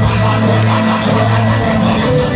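Live gospel worship music from a band with drums and electric guitar and singers on microphones, with a held low bass note under it, heard as played loud in the hall.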